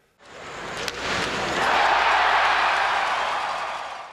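Edited-in transition sound effect: a rush of noise that rises from about a quarter second in, is loudest in the middle and fades away near the end.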